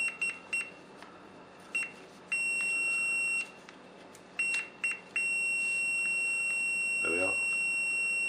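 Fluke multimeter's continuity buzzer sounding a high steady tone, first in a few short broken beeps as the probes find contact on the frost stat's terminals, then continuously from about five seconds in. The continuous tone shows that the frozen bi-metal switch is closed.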